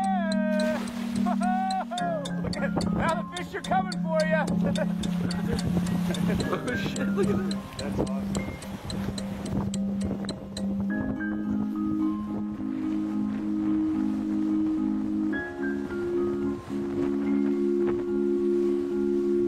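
Background music with a steady low drone, joined about eleven seconds in by a mallet-percussion melody like a marimba. Over the first several seconds, voices shout and call above the music.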